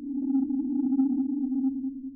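Sonified radio and plasma-wave data from Juno's Waves instrument during its Europa flyby, heard as a steady electronic drone: a low hum with a fainter, wavering higher tone above it. It dips briefly near the end.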